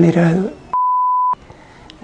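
Speech cut off, then a single steady beep tone about half a second long, starting about three-quarters of a second in: an edited-in censor bleep over the interview audio.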